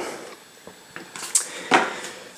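Handling of a cardboard playing-card tuck box and deck: a few light clicks about a second in, then a brief papery rustle near the end.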